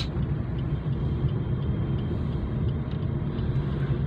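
Steady low rumble of a Suzuki car's engine and tyres on the road, heard inside the cabin while driving at a steady speed.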